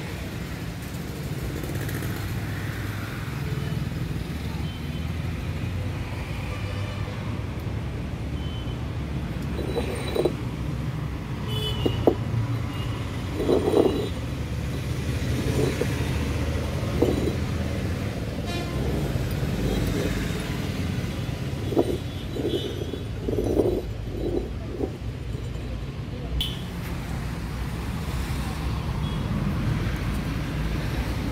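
Steady low rumble of road traffic. From about ten to twenty-five seconds in, a string of short, louder sounds stands out over it.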